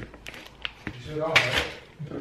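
A plastic salami packet being peeled open by hand: crinkling film and a few small sharp clicks, with a brief voice sound about a second in.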